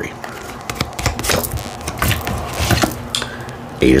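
Tarot cards being handled and sorted through in the hands, a series of irregular light clicks and snaps of card stock as a card is drawn from the deck.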